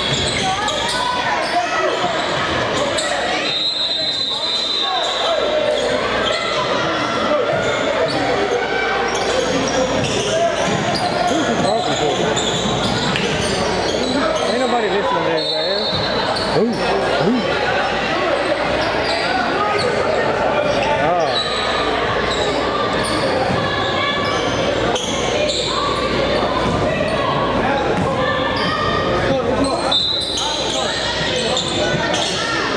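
Basketball game sound in an echoing gym: a ball bouncing on the hardwood court amid the indistinct talk and calls of players and spectators, with brief high squeaks about four and sixteen seconds in.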